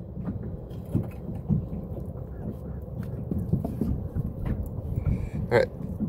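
Spinning fishing reel being wound in to bring a jig up from the water, faint irregular clicking over a steady low rumble of wind on the microphone.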